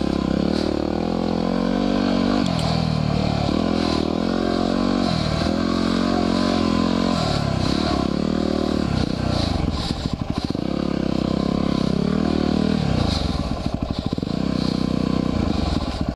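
2010 Yamaha WR250R's 250 cc single-cylinder four-stroke engine under way on a dirt trail, its pitch rising and falling as the throttle is worked, with brief drops in revs about a third of the way in, around the middle and again later, heard from a helmet-mounted camera.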